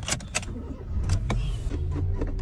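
Car ignition key turned with a couple of sharp clicks near the start, then the engine running at a steady low idle from about a second in.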